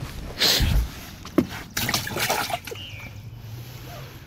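Water splashing in irregular bursts at the boat's side as a hooked rainbow trout is brought in.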